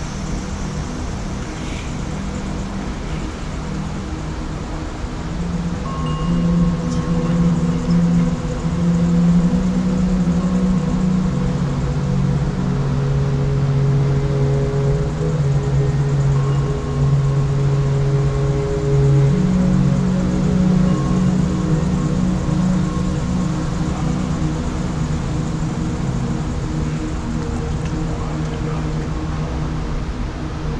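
Ambient drone music: long held low notes swell in about six seconds in and shift pitch slowly every few seconds, over a steady rushing background noise.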